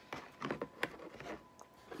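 Rustling and several sharp clicks of small objects being handled and picked up, the loudest click a little under a second in.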